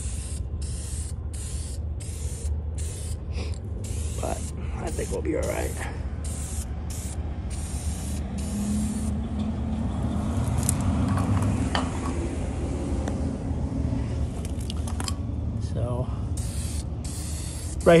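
Aerosol spray can of Dupli-Color gloss black vinyl and fabric paint spraying in many short bursts, about two a second, then one longer steady spray, then short bursts again near the end. A low rumble runs underneath and swells in the middle.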